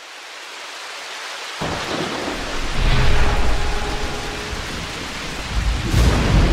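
Rain and thunder sound effects: a steady hiss of rain fades in, then a deep roll of thunder breaks in about a second and a half in and swells to its loudest around the middle.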